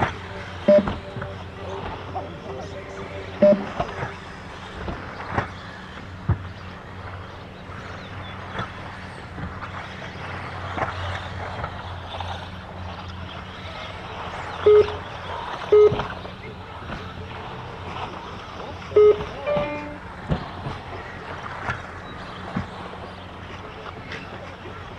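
2WD RC buggies running laps on a turf track, a steady whirring bed under outdoor crowd chatter. Several short, loud beeps cut through it.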